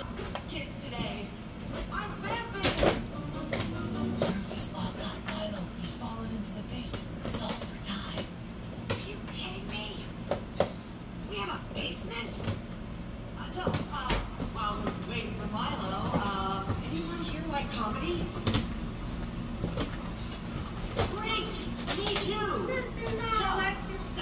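A dog nosing and tearing into a cardboard shipping box: cardboard rustling and scraping with a few sharp knocks, over voices and music playing in the background.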